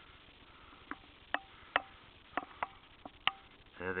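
Clicking on a computer: about eight sharp, irregularly spaced clicks starting about a second in, over a low steady hiss.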